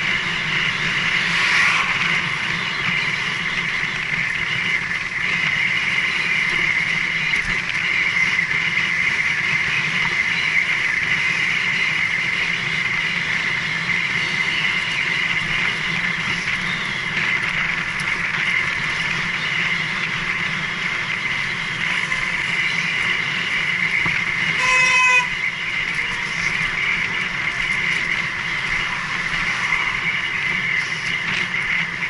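Steady rushing of wind and tyre noise from a bicycle ridden fast, at about 25 mph, picked up by a head-mounted camera. About 25 seconds in, a horn gives one short toot.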